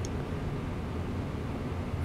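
Steady low background rumble with a faint hiss, with no distinct event in it.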